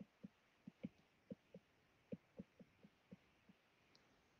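Faint, soft, irregular taps of a stylus on a tablet screen during handwriting, a few taps a second.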